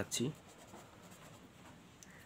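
Pen writing on paper: a faint, light scratching as a word is written.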